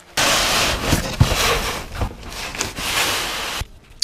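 Cardboard packaging being opened and handled: continuous rustling and scraping with a few knocks. It starts suddenly and stops about half a second before the end.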